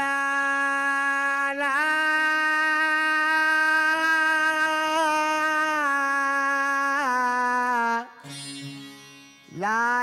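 A male voice singing long, wordless held notes of a Sindhi folk song over a faint low drone. It slides up into each note and holds it for several seconds, shifting pitch twice. It breaks off about eight seconds in, and a new note swells in just before the end.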